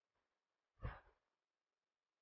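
A single short exhale, breathed close onto a clip-on microphone, about a second in; otherwise near silence.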